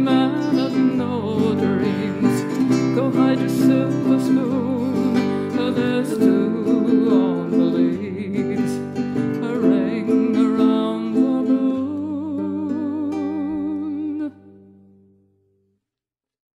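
Acoustic guitar playing the instrumental ending of a folk song, with a last held chord that cuts off about fourteen seconds in and dies away.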